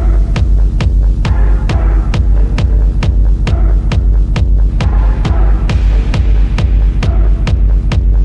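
Dark techno track playing: a steady four-on-the-floor kick drum a little over two beats a second over a constant deep bass drone, with a repeating synth pattern in the middle range.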